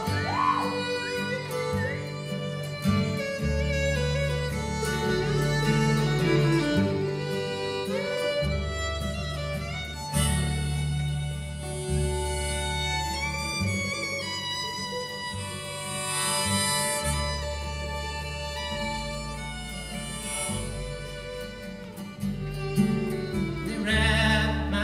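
Old-time country string band playing an instrumental break between verses: a bowed fiddle carries the melody over acoustic guitar, mandolin and upright bass.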